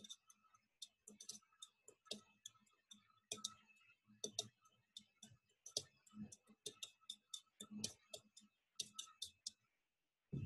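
Faint, irregular clicks and taps of someone typing and clicking on a computer keyboard and mouse, several a second with short pauses.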